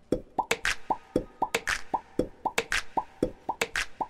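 Comic background music: short popping, plucked-sounding notes in a quick, bouncy rhythm of about four or five a second.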